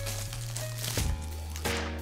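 Background music with a steady low bass, with a couple of brief knocks from handling a violin case's shoulder rest.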